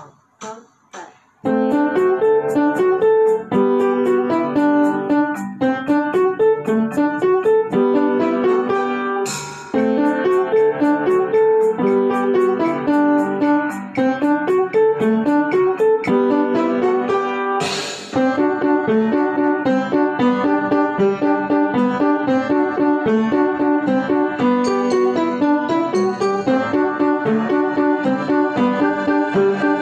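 Upright piano played in a quick, rhythmic pattern of short, detached notes, starting in earnest about a second and a half in after a few isolated notes.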